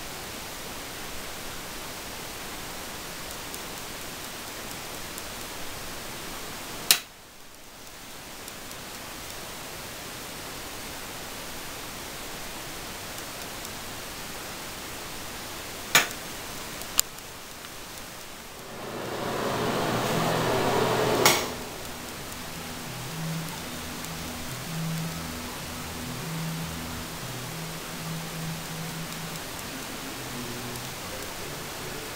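Steady hiss of background noise, broken by sharp single clicks where clips are joined. About two-thirds of the way through, a louder rushing noise swells for a couple of seconds and cuts off with a click, followed by faint low stepped tones.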